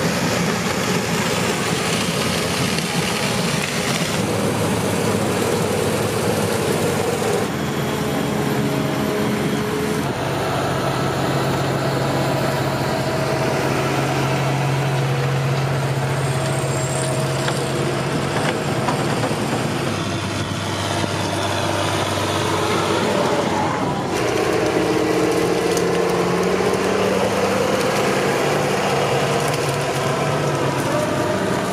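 Engines of farm machinery at work in the field, cut together from several shots: a New Holland combine harvesting maize, a tractor with a loader wagon picking up grass, and a New Holland tractor. Each is a steady engine hum, and the pitch and character change suddenly every few seconds as one machine gives way to the next.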